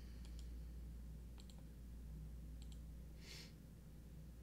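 Faint clicking at a computer desk: pairs of short clicks, about one pair a second, over a steady low hum, with a short breathy hiss about three seconds in.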